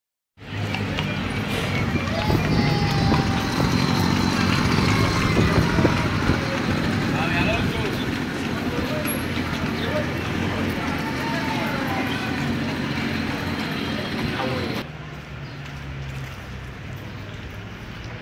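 City street ambience: people's voices mixed with passing traffic and a steady low engine hum. About fifteen seconds in, the sound drops abruptly to a quieter, duller background.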